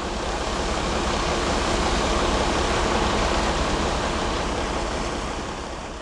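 Steady rushing noise of fire-hose water jets spraying onto a burning industrial hall, with a steady low rumble beneath, fading out near the end.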